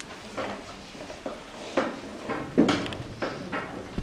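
A few short knocks and scrapes of small objects being handled on a table, the loudest about two and a half seconds in.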